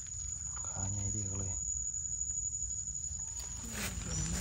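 Steady high-pitched insect drone, like a cricket or cicada chorus, with a short human vocalisation about a second in.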